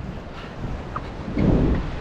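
Wind buffeting the action camera's microphone as it is carried along the beach, a low rumble that grows much louder about a second and a half in.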